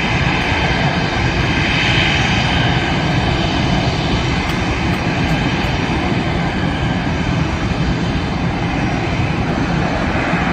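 Jet engines of an Airbus A320-family airliner running at taxi power, a steady loud whine and rush of jet noise.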